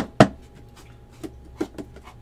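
An empty trading-card hobby box being handled and tilted: two sharp knocks at the start, then a few lighter taps.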